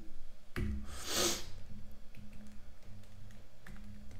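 A short, sharp breath through the nose, lasting about half a second, about a second in, just after a click. Faint computer-keyboard keystrokes come here and there.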